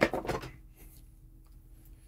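Plastic power brick and its cable being handled: a sharp clack at the start, a few short knocks and rustles, then quiet.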